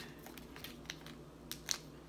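Faint crinkles and light ticks of foil Pokémon booster pack wrappers being handled and squared into a stack, a handful of short ones, the clearest about a second and a half in.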